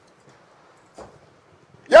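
A pause in a man's speech: near quiet, with one short faint sound about a second in, then his voice starts again at the very end.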